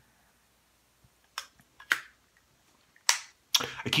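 About four short, sharp clicks, the loudest about three seconds in: the metal lid of a Zippo-lighter-style e-liquid bottle case being flipped and pushed shut.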